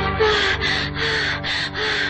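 Hindi film song music: rhythmic breathy panting, about three breaths a second, over held instrument tones.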